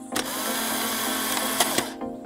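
A loud, harsh buzzing noise burst in the intro music, lasting about a second and a half. It starts and stops abruptly with a click, while the music's notes carry on faintly beneath it.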